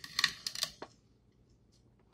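Kitchen knife cutting through a thick aloe vera leaf on a plate: a few sharp crisp clicks and scrapes in the first second.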